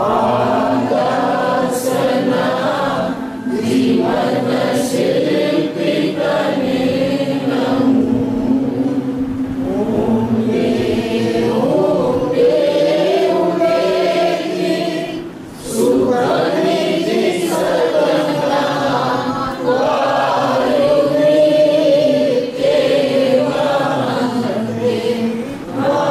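Several voices chanting a devotional verse together in a sung recitation with long held notes, pausing briefly for breath a few times.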